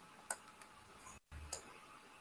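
Near silence with two faint short clicks, about a third of a second in and about a second and a half in; the audio drops out completely for a moment just before the second click.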